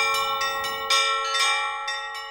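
Church bells pealing: quick strokes of small bells ring over the steady hum of larger bells, dying away near the end.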